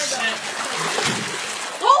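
Floodwater splashing, with a man's startled exclamation near the end.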